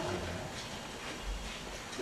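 Quiet auditorium room tone with a faint low thump about a second and a half in.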